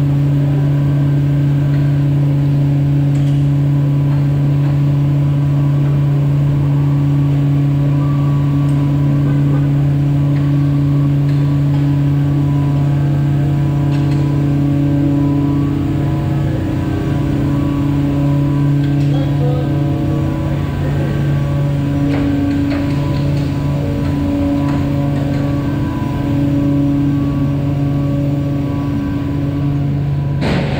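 Heavy truck engine running at low speed, a steady deep drone that wavers slightly in pitch in the second half.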